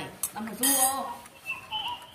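Porcelain rice bowls and spoons clinking during a meal, with a sharp click near the start. A faint high whistling tone rises in the second half.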